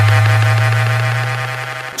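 A deep, steady sub-bass tone from an electronic car-audio track, held without change and fading out near the end, with faint ticking above it.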